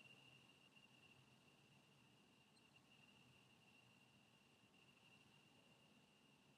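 Near silence: faint recording hiss with a thin, steady high-pitched tone.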